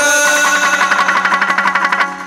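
Chầu văn ritual music: a plucked string instrument holds sustained notes with a fast, even tremolo.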